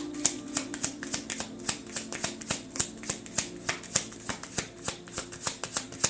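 A deck of tarot cards being shuffled by hand: a fast, uneven run of short card snaps and slaps, about five or six a second, without a break.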